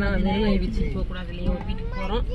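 Speech in Tamil over the steady low rumble of a car cabin, with voices rising and falling in pitch.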